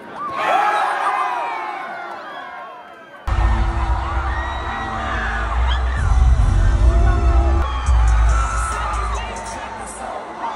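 A concert crowd shouting and screaming for about three seconds, fading away. Then, after a sudden cut, loud hip-hop music with heavy bass plays through the arena sound system while the crowd keeps screaming over it.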